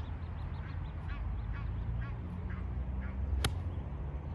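A golf wedge striking the ball off turf: one sharp click about three and a half seconds in. Before it, a bird calls repeatedly in a series of short notes.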